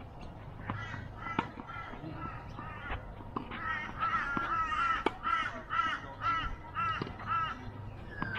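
A bird gives a run of about nine repeated calls, roughly two a second, through the middle and later part. A few sharp clicks of a tennis ball being struck by rackets come before and among the calls.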